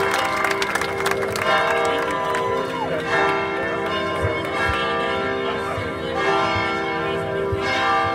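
Cathedral bells ringing: several bells sound in turn, each ringing on under the next, so their tones overlap in a steady peal.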